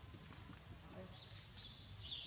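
Young macaque screaming: two short, high-pitched screams a little past halfway, the second louder, as it is pinned and gripped tightly by another monkey.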